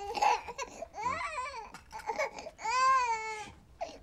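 A hungry baby crying in a string of wails that each rise and fall, the longest and loudest near the end.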